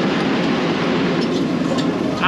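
JCB 225LC tracked excavator running, its diesel engine giving a steady mechanical hum.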